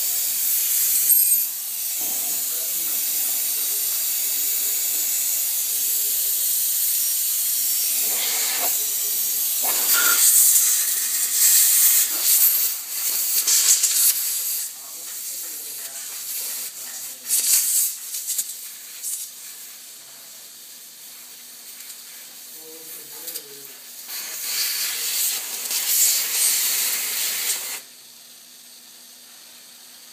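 Compressed air hissing loudly out of an experimental Blockhead 4R air-bearing spindle and its supply fitting. The hiss swells and surges, weakens for several seconds, comes back strong, then cuts off suddenly near the end.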